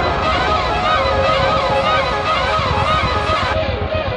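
Several sirens yelping at once, their rapid rising and falling pitch sweeps overlapping above a noisy street background.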